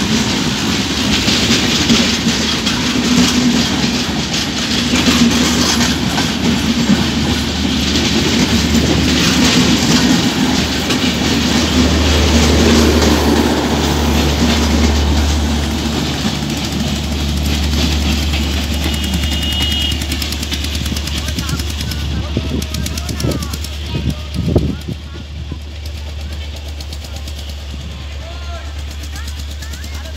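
Passenger train coaches rolling past on the track, their wheels clattering over the rail joints. The sound fades through the second half as the train draws away, with a single sharp knock near the end.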